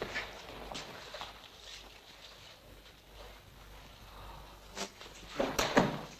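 Faint shuffling footsteps and rustling of clothing as sambo trainees practise an arm hold, with a few louder scuffs near the end.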